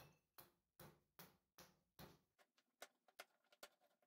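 Faint, evenly spaced knocks of a hatchet chopping into a small wooden block, about two and a half strikes a second, giving way after about two seconds to lighter, quicker taps.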